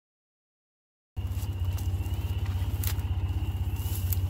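Silence for about the first second, then a Ranger side-by-side utility vehicle's engine idling with a low, even pulse. A sharp click about three seconds in.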